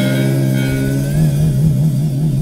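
Live electric blues-rock band (guitar, bass and drums) holding a sustained final chord at a song's end. From about a second in, the low note wavers evenly in pitch.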